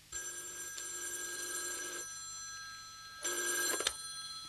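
Telephone bell ringing as a radio-play sound effect: one long ring of about two seconds, a pause, then a second, shorter ring near the end.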